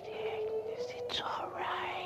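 Horror film soundtrack: a slow sung melody in long held notes that step upward, with a whispering, strained voice sweeping up and down over it.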